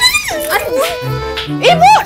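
A woman's short, high yelping cries, one at the very start and a sharply rising one near the end, over background music with held low notes.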